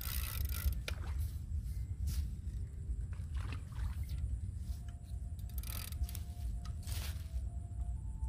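Several short rushes of noise, from a hooked carp thrashing and being played on the line in the water, over a steady low rumble.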